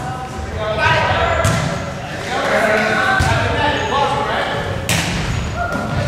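Volleyball rally in an echoing gym: a few sharp smacks of hands hitting the ball, the hardest about five seconds in, under shouting voices.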